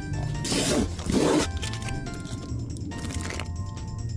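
Background music with a steady bass beat, broken by two short, loud rushing noises within the first second and a half and a fainter one near three seconds.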